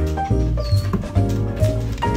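Background music playing, over a Weimaraner whining at the door to get out after her owners have left.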